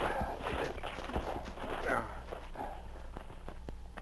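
Radio sound effect of brush and branches being pulled away by hand: irregular rustling and crackling with scattered snaps.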